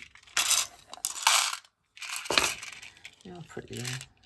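Small nail-art gems rattling and clinking loose in a plastic heart-shaped box as it is tilted and shaken, in three short bursts.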